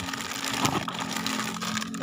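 Plastic snack packaging crinkling and rustling as it is handled, with a sharper crackle a little under a second in.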